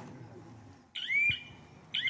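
Two short high-pitched chirps about a second apart, each sliding up in pitch and then holding briefly, the first coming about a second in.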